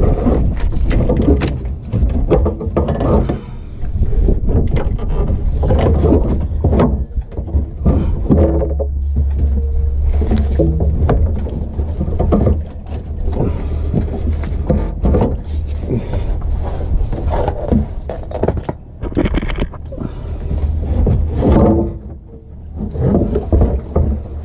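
The Honda Element's stock plastic fuel tank, still about half full of fuel, being worked down from under the car: irregular knocks, scrapes and rubbing of the tank against the underbody and the pavers, with the fuel sloshing inside.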